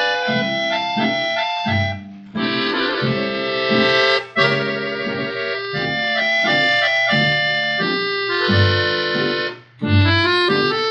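Dance orchestra playing an instrumental passage without voices, from a 1949 78 rpm shellac record; the music drops out briefly three times between phrases.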